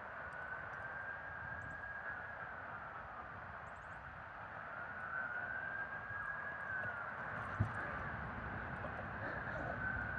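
A faint siren wail, its pitch rising and falling slowly every three to four seconds, over a steady outdoor hiss, with a single knock near the end.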